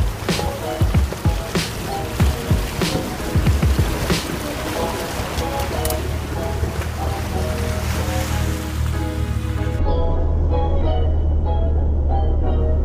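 Background music over the sound of a 4x4 driving through a shallow river crossing: water splashing and tyre noise on wet ground. The splashing and tyre noise stop suddenly about ten seconds in, leaving only the music.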